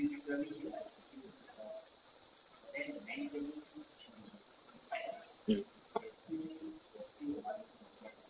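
Crickets chirping in one steady, high-pitched drone, with faint low murmuring voices and a quiet 'mm-hmm' a little past halfway.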